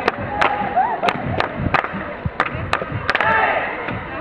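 Hand clapping close by, sharp claps roughly three a second, over the steady chatter of a crowd in a hall; a brief burst of shouting voices about three seconds in.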